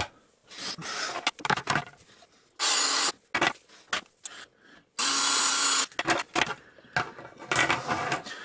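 Makita drill with a 5 mm bit running in two short bursts, each under a second and about two seconds apart, drilling out the orange plastic end nozzles of flexible coolant hoses. Clicks and rubbing from the handled plastic hose segments come between and after.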